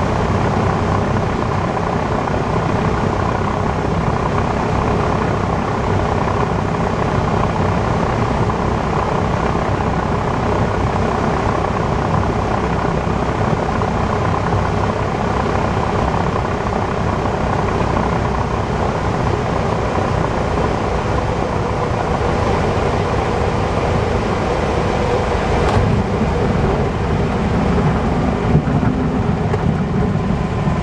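Cessna A150M Aerobat's engine and propeller running steadily at landing-approach power, with wind noise, heard inside the cockpit. About 26 seconds in there is a brief sharp knock, and a few bumps follow near the end as the wheels settle onto the runway.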